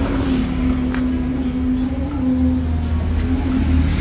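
Vehicle engine idling steadily: a low rumble with an even hum held above it.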